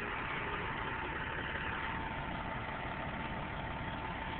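A vehicle engine idling steadily under an even hiss.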